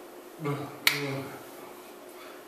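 One sharp hand snap a little under a second in, made while signing, with short wordless voice sounds just before and after it.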